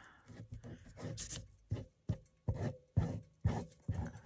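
Glue bottle being squeezed out over a paper strip, with paper handling: a series of short, sharp taps and rustles, about two a second in the second half.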